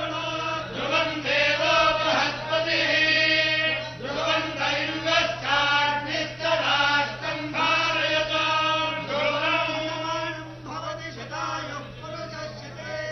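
A group of Hindu priests chanting mantras together in unison as a blessing, in repeated phrases with short breaks between them. A steady low hum runs underneath.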